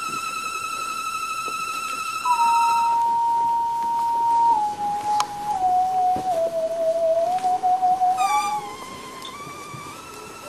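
Reactable tabletop synthesizer playing a single wavering electronic tone with vibrato, a theremin-like sound that steps down in pitch in stages over several seconds, then jumps back up near the end. A couple of sharp clicks sound around the middle.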